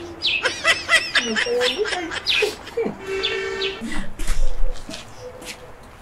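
Birds chirping: a quick run of high, arching chirps in the first second and a half, then a short held call about three seconds in.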